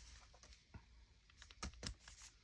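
Quiet paper handling as a journal page is turned and pressed flat by hand, with a few faint taps, two of them close together near the end.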